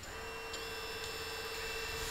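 Brushless motors of an FPV quadcopter spinning at idle with the propellers removed, during a rotation-direction check: a steady, faint whine that sets in just after the start.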